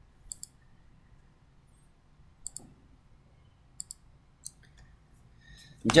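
A few sharp clicks of a computer mouse at irregular moments, most in quick pairs, over faint background hiss.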